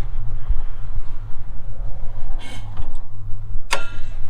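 Steady low rumble of wind on the microphone. There is a short rustle about two and a half seconds in, then a single sharp metal clank with brief ringing near the end as the tractor's steel hood is handled to be opened.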